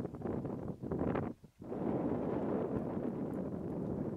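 Wind blowing across the microphone outdoors, a steady rushing noise that cuts out briefly about one and a half seconds in and then carries on.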